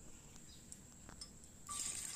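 Quiet kitchen with a few faint clicks, then near the end a soft hiss starts as chopped ginger goes into oil in a frying pan.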